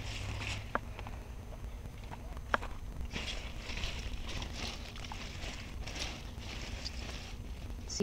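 Large butternut squash leaves rustling in uneven bursts as a hand pushes through and lifts them, with a couple of sharp clicks and a steady low rumble underneath.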